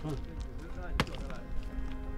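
Faint voices over background music, with one sharp knock about a second in.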